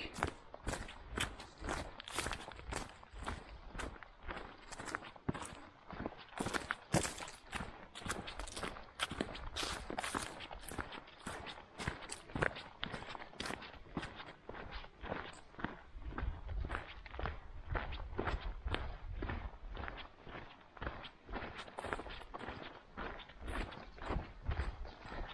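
A walker's footsteps on a sandy dirt bush track strewn with leaf litter, a steady walking pace of about two to three steps a second.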